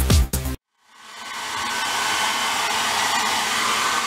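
A hair dryer switches on and blows steadily, swelling over about a second as it spins up, drying a toddler's wet hair after a bath. Electronic dance music cuts off just before it, about half a second in.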